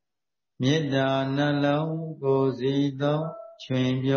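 A man's voice chanting Buddhist recitation in long, level-pitched tones. It starts after a short silence, with a brief break before the next phrase near the end.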